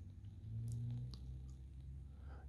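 A quiet pause filled with soft mouth noises: a few faint wet clicks, and a brief low hum held for under a second, close to the microphone.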